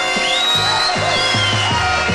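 A live orchestra plays a pop-song medley. A high melodic line glides up and down over sustained chords and low bass notes.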